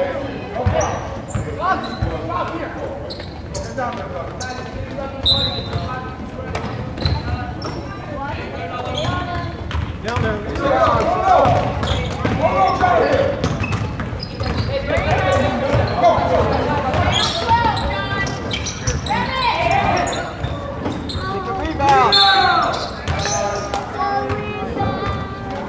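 Basketball bouncing on a hardwood gym floor during play, a string of short sharp knocks through the whole stretch, with spectators' voices and shouts in a large echoing gym, louder in the middle and near the end.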